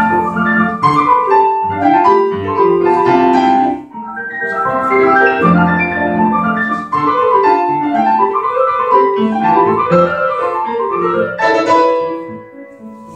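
Grand piano playing a classical piece live, with rising and falling runs of notes. The phrases break off briefly about four and seven seconds in.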